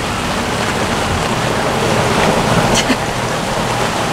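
Steady rain falling on a sailboat's canvas cockpit enclosure during a squall.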